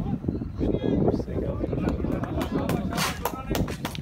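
People talking close to the microphone, words not clear, with a run of sharp clicks or taps in the second half.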